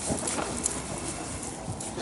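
Soft hoofbeats of a horse moving over the sand footing of an indoor arena, a run of muffled strikes.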